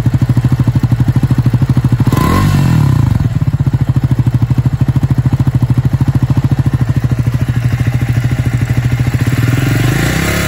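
Triumph Scrambler 400 X's 398 cc single-cylinder engine idling through its stainless-steel double-barrel silencer, with evenly spaced exhaust pulses. There is one short throttle blip about two seconds in, then it settles back to idle.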